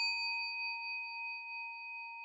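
A single bell-like chime sound effect ringing on after being struck, a clear tone that fades slowly.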